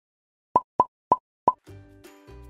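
Four short plop sound effects in quick succession, then soft background music coming in near the end.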